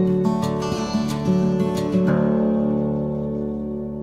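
Background music: an acoustic guitar strumming chords, the last chord struck about two seconds in and left ringing as it fades away.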